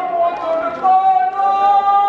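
Men chanting a Kashmiri marsiya, a Muharram elegy, in long held notes that slide from one pitch to the next.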